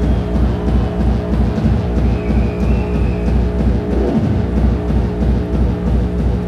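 Loud hardcore electronic dance music with a fast, regular pounding distorted kick drum. A short high synth line comes in about two seconds in.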